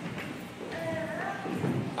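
Footsteps of hard-soled shoes on a floor as a man walks, with a faint voice in the background.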